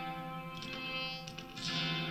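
Electric guitar played through a reverse delay effect: sustained ringing notes with a few plucked notes in the middle, and a new note swelling up near the end.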